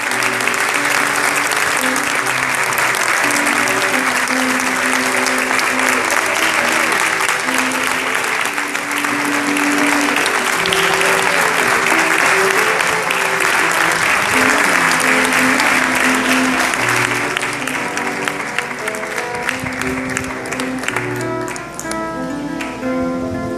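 Audience clapping steadily over background music with long held notes, the clapping thinning out near the end.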